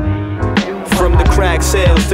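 Hip hop beat with deep bass and drums. The bass drops out briefly about half a second in, then returns with short, pitch-sliding chopped sounds laid over the loop.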